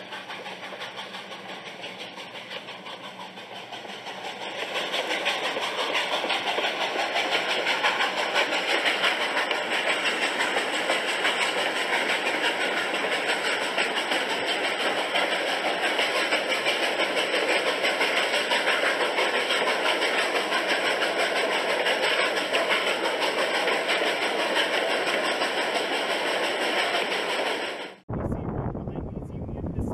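Recorded sound of a train running: a steady rumbling rail and engine noise that gets louder about four and a half seconds in and then holds.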